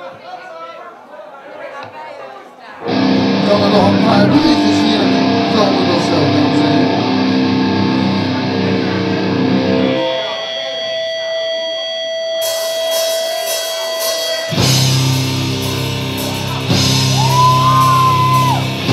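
Live rock band with electric guitars. After a quieter opening, the full band comes in loud about three seconds in. It drops back to a few held notes around ten seconds, then comes in full again near fifteen seconds.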